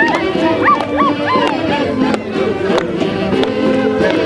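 Live festival dance music played for a line of dancers: a melody in short rising-and-falling sweeps over steady held lower notes, at an even loudness.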